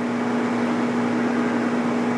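A steady hum over a constant hiss, unchanging, with nothing else happening.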